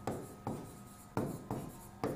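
Marker pen writing on a board in short, quick strokes, about four in two seconds.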